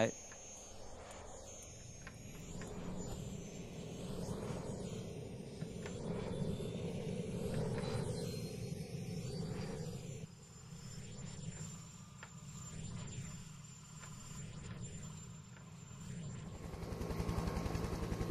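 Recorded helicopter sound effect played back and moved around in a spatial audio mix. It is a steady rotor-and-engine noise with slow, repeated whooshing sweeps in its tone.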